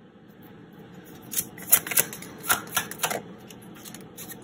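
Tarot and oracle cards being handled and laid onto a spread: a run of short, crisp card flicks and slaps, starting about a second and a half in.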